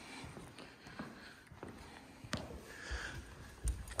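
Faint footsteps of boots on a hardwood floor: a few soft clicks more than a second apart, with duller low thuds near the end as the steps reach carpeted stairs.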